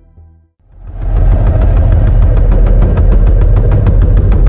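Series intro sound design: a loud, heavy low rumble with a fast, even ticking on top, about six or seven ticks a second. It swells in about a second in, after a brief hush.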